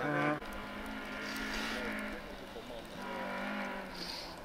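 Rally car engines. A loud, steady engine note cuts off abruptly about half a second in. After it, a fainter engine is heard further off, its pitch rising and falling with the throttle in two spells.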